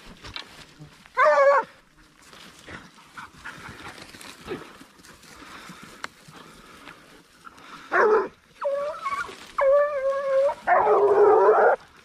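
Ariégeois hunting hounds baying: one short bay about a second in, then a string of bays near the end, the last two long and drawn out.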